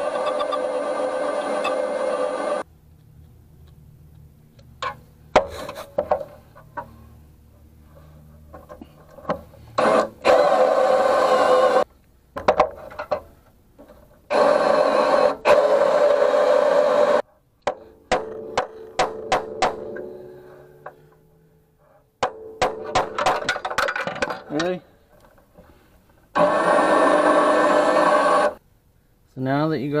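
Cordless brushless drill driving a spot-weld drill bit through a car body's sheet-metal spot welds. It runs in four loud spells of two to three seconds each, with short trigger blips and clicks between them.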